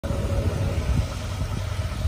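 Vehicle engine idling: a steady low rumble with a faint steady hum above it.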